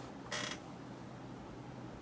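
A gaming chair creaking once, briefly, as a person settles back in it.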